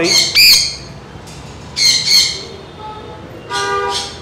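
Parrots squawking: loud, harsh, high-pitched screeches right at the start and again about two seconds in, with a shorter call near the end.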